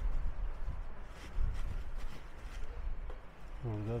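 Outdoor ambience with a steady low rumble on the microphone and a few faint taps; a man starts speaking near the end.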